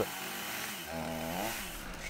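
Chainsaw running, its pitch rising and falling once around the middle, over a steady hiss.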